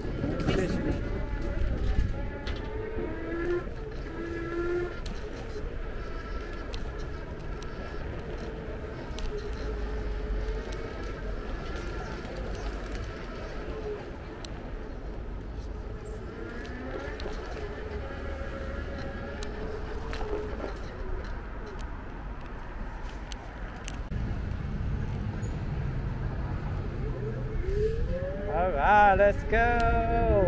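Ride noise from an electric scooter on city pavement: a steady low rumble of wind and wheels, with voices coming and going, loudest near the end.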